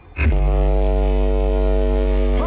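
A deep, steady horn-like drone in an electronic dance mix, one held low note with many overtones. It starts suddenly about a quarter of a second in, after a brief dip in the music.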